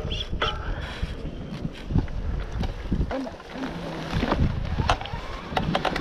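Electric mountain bike rolling over a rocky trail: wind on the microphone and tyre rumble, with many sharp clicks and rattles from the bike as it goes over bumps.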